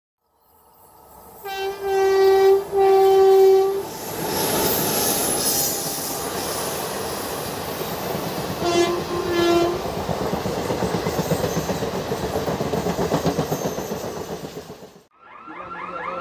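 Indian Railways express train hauled by a freight electric locomotive, passing close by. Two horn blasts sound a couple of seconds in and a shorter one about nine seconds in, over the rumble and rhythmic clatter of coach wheels on the rails. The train noise fades and cuts off abruptly near the end, where a different pitched sound begins.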